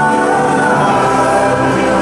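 Background music of a choir singing long, held chords.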